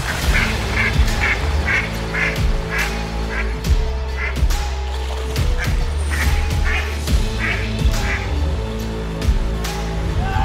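Intro music with a steady bass, overlaid by duck quacks in quick runs of about two to three a second, pausing briefly a little before halfway.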